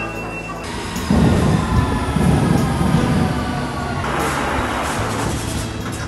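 London Underground train in the station: a loud rumble starts about a second in and runs for a couple of seconds. A hiss follows, then a steady low hum as the train stands at the platform.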